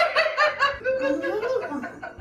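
A man laughing: a quick run of repeated 'ha-ha' pulses, then a longer wavering laugh.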